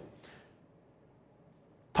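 A pause in a man's speech: his voice trails off, then near silence with only faint room tone, ended by a brief sharp click as he starts speaking again.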